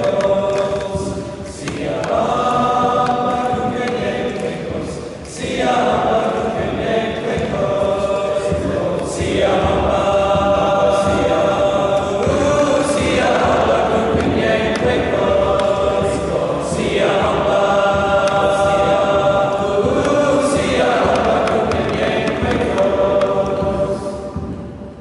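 A choir of schoolboys singing together in a large church, in held phrases of about four seconds, each followed by a brief breath-pause.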